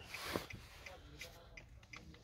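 Quiet car cabin with a few faint clicks, the sharpest about a third of a second in.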